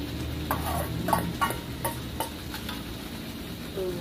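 Metal spatula scraping and knocking against a steel wok, about eight strokes over the first three seconds, as fried anchovies are stirred into sambal chilli paste. A steady low sizzle of the simmering paste runs underneath.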